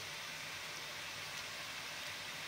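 Faint, steady hiss of fish fillets wrapped in buttered parchment cooking in a dry, preheated frying pan.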